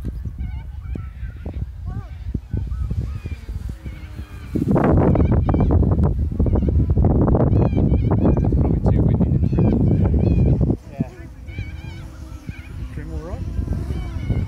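Wind blowing on the microphone, a loud low buffeting that starts suddenly about a third of the way in and cuts off about six seconds later. Birds call in the background.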